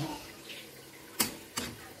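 Metal spoon stirring oily shredded cassava (abacha) in a metal pot, a soft wet scraping with a sharp click of spoon against pot about a second in and a fainter one just after.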